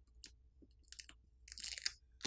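Faint crackling of plastic film and adhesive as a smartphone battery's adhesive pull pouch is pulled, in short bursts about a second in and a longer one near the end.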